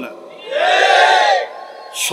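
A man's loud, drawn-out vocal cry through a public-address system, lasting about a second and rising then falling in pitch.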